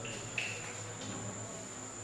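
Quiet room tone: a steady high-pitched whine over a low hum, with a faint short sound about half a second in.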